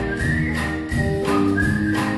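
A man whistling a melody line into a microphone over a live band's accompaniment with a steady beat.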